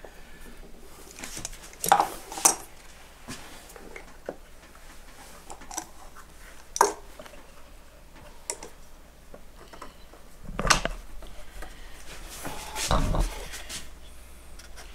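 Scattered sharp metallic clinks and knocks of a steel bar clamp being handled and fitted to a block of wood on a workbench. Two heavier thumps come late on.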